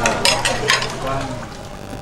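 A metal ladle clinking and scraping against an aluminium cooking pot while serving out curry broth, several sharp clinks in the first second, then quieter.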